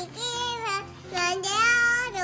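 A toddler girl's high voice babbling made-up gibberish in a sing-song way as she pretend-reads from a book. It comes in two drawn-out phrases, the second louder.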